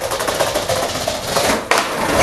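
Skateboard wheels rolling over rough pavement with a steady rattle, then one sharp clack near the end, as of the board being popped or landing.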